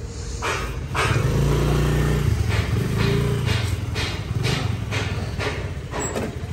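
A motorcycle engine running close by, a low drone that swells about a second in and eases off toward the end. Over it are footsteps on paving, about two steps a second.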